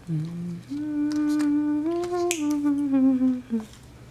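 A person humming a short tune: a few long held notes that step up about halfway through, then drift down and end on a short low note. A few light clicks sound over the humming.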